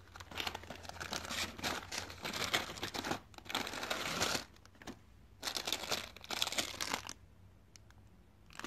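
Paper bag crinkling and rustling as it is handled and opened by hand, in a long spell of about four seconds, a pause, then a shorter spell.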